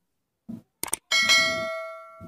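A couple of quick clicks, then a bell struck once that rings and fades over about a second: the click-and-bell sound effect of an animated subscribe button being clicked.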